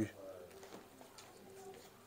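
Faint bird calls, twice, low in pitch, over quiet room tone.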